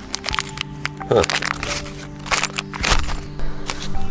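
Packing paper and a plastic bag of bolts and washers being handled, with a string of sharp crinkles and clicks, over steady background music.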